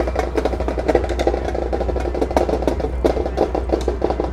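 Youth drumline playing snare drums, a fast, dense rhythm of rapid strokes.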